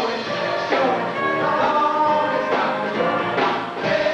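Ensemble chorus singing over a live rock band in a stage musical.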